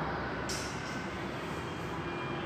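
Steady low background rumble and hiss with no distinct event, with a short high hiss about half a second in.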